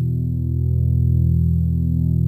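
Background music with bass guitar and electric guitar, heavy and sustained in the low end.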